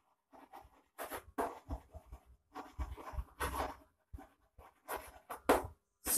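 Chalk writing on a chalkboard: a run of short, irregular strokes as words are written, with brief pauses between them.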